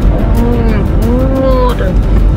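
A child's voice making two long, drawn-out wailing calls, each rising and then falling in pitch, over the steady low rumble of a car cabin.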